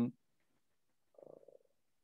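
A man's word trails off at the very start. After that it is near silent, apart from one faint, short creaky vocal sound, like a hesitating "uh" in his throat, about a second and a quarter in.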